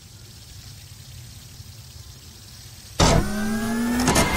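A fidget spinner whirring low and steady as it spins. About three seconds in, a loud whine cuts in and rises in pitch, like a motor revving up.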